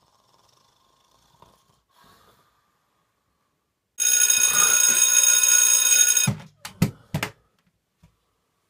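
An alarm clock ringing loudly for about two seconds, starting suddenly about halfway through and cutting off, followed by three short thumps.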